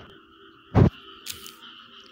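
Frogs calling in the background: a steady faint chorus, with one loud short call just under a second in.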